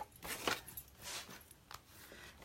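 Faint rustling and light taps of a plastic embossing folder being handled and set up at a Big Shot die-cutting machine.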